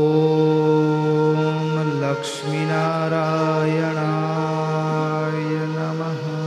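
A man chanting a mantra in long, steady held notes at a low pitch, with a short breath about two seconds in and a faint music bed beneath.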